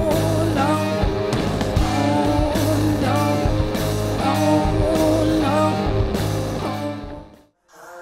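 Psychedelic rock band playing: electric guitar, keyboards, bass and a singing voice, a short melodic phrase repeating about once a second over a steady bass line. The music fades out about seven seconds in.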